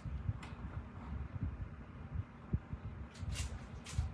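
Soft low thuds and knocks of hands rummaging through a basket of crafting supplies, with a few light clicks, two of them near the end.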